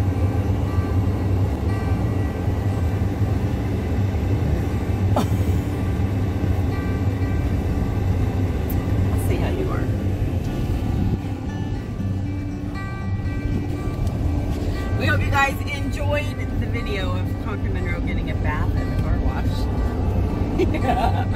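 Steady low road and engine rumble inside a moving pickup truck's cabin, with music playing over it. Short bits of voice come in about fifteen seconds in.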